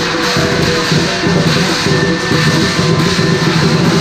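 Chinese lion dance accompaniment: a big drum, cymbals and gong playing continuously and loudly, with the ring of the metal over the beat.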